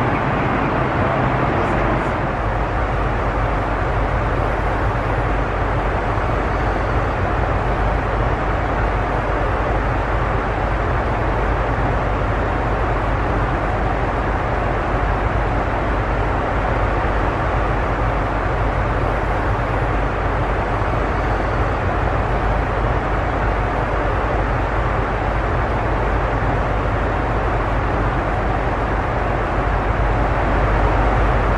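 Steady in-flight cabin noise of a Boeing 747: the even, unbroken rush of airflow and engines at cruise.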